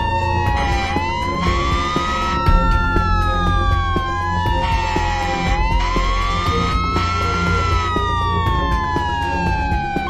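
Several emergency-vehicle sirens wailing together at different pitches, each rising and falling slowly over a few seconds, over a low rumble of traffic.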